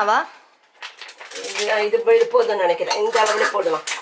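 Metal kitchen utensils and pans clinking and clattering at a gas stove, in a string of short, sharp knocks starting about a second in.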